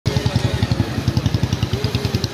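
An engine idling close by, a steady rapid low thudding of about a dozen beats a second.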